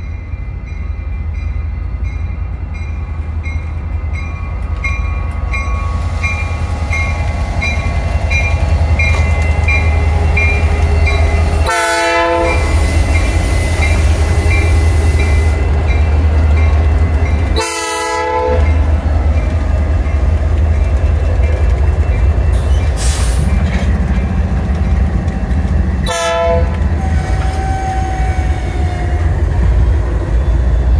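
Norfolk Southern diesel locomotives passing close by, their engines running with a deep steady rumble that grows louder as they draw near. A bell rings steadily through the first part. From about the middle on, the air horn sounds three short blasts several seconds apart.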